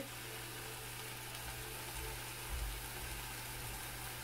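Sliced mushrooms frying in a small saucepan: a steady, soft sizzle.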